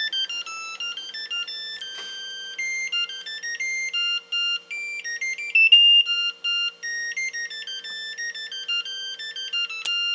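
Zojirushi CV-DSC electric water boiler playing its electronic beep melody, a quick run of stepping beeper tones, the signal that the water has finished boiling. A steady low hum runs underneath.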